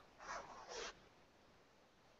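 Near silence on a video-call line, with two faint, brief noises within the first second.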